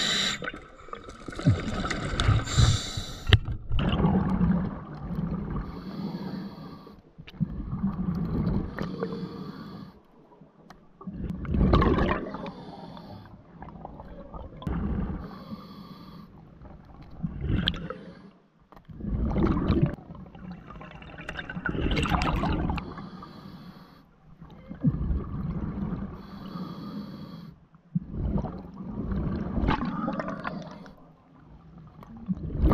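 Underwater breathing through a diver's scuba regulator: a hissing inhale and then a bubbling exhale, repeating every few seconds.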